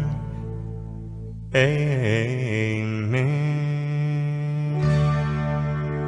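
Country music: a held note fades, then about a second and a half in a new phrase begins with a wavering, bending melody that settles into a long held note over a steady low drone.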